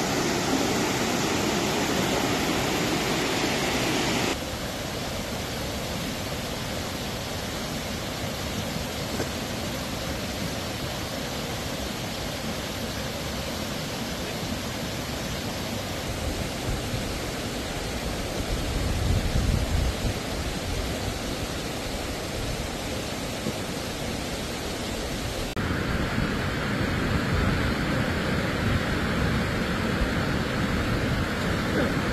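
Steady rushing roar of a flood-swollen, mud-laden mountain river running through flood debris. Its tone and loudness shift abruptly twice, and a low rumble swells briefly about two-thirds of the way through.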